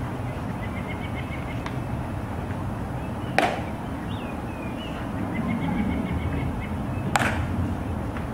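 Two sharp heel clicks from a ceremonial guard's dress shoes, about four seconds apart, as he turns at attention. Faint bird chirps are heard between them.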